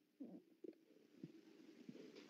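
Near silence, with a few faint, brief low sounds scattered through it.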